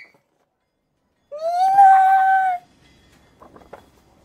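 A young woman's excited, high-pitched squeal, held steady for about a second after a silent pause. A few faint paper crinkles follow as she handles a glossy mini poster.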